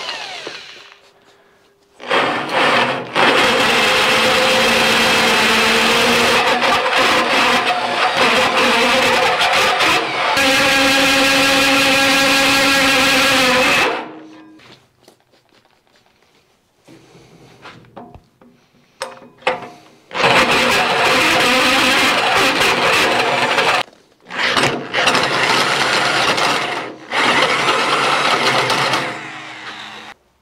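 Electric drill running a hole saw through the steel plate of a bulldozer's front guard: a long stretch of loud cutting with a steady motor whine, a pause of several seconds in the middle, then two more bursts of cutting. The cut is slow going.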